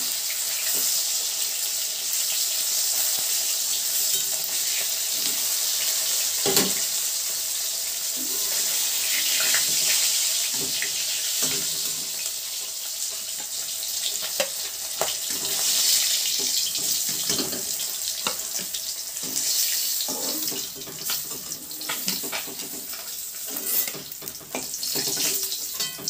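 Rohu fish pieces frying in hot mustard oil in a kadai: a steady sizzle, with occasional clicks and scrapes of a metal spatula against the pan, more frequent near the end.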